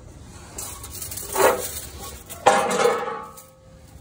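A metal engine access plate being lifted away and set down: a scraping rattle, then a sharp clank about two and a half seconds in that rings briefly and dies away.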